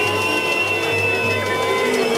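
Singing amplified through a public-address system, with long held notes.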